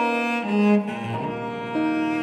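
Bowed string chamber music in a classical style, playing held, sustained notes. A louder low note swells about half a second in.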